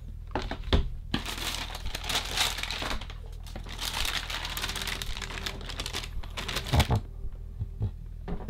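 Tissue paper rustling and crinkling as it is pulled back and unfolded inside a cardboard shoebox, with a few short knocks from the box being handled.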